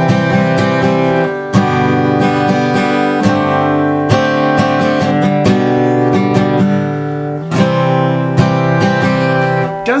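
Acoustic guitar strummed slowly without a capo, working through a G chord, a B form and a C chord with an added G note, the chords changing every second or two.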